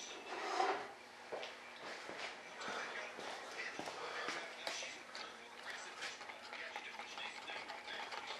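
Quiet small-room workshop sound: faint scattered clicks and rustles of handling, with a faint voice in the background.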